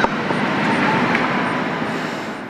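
Steady rushing engine noise from passing traffic, easing off slightly near the end.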